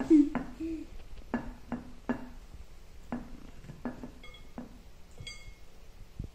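A table knife spreading smoked salmon cream-cheese spread onto bagel halves, giving a series of soft knocks and scrapes against the bread and plate. A few short high squeaks come in near the end.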